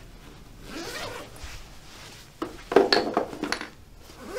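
A bag's zipper being pulled open and the bag handled: a click about two and a half seconds in, then about a second of rasping and rustling.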